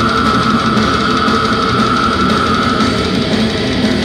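Death metal band playing live: heavy distorted guitars and drums, recorded loud from the audience. A long high note is held over the band, sinking slightly in pitch and fading out about three seconds in.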